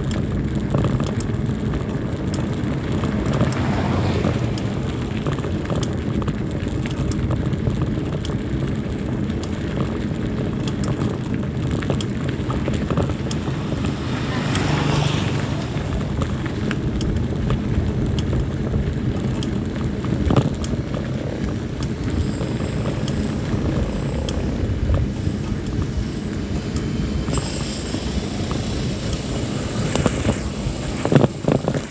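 Steady low rumble of wind buffeting a phone microphone, mixed with tyre noise from a mountain bike rolling over rough, patched asphalt, with scattered knocks and rattles from bumps in the road.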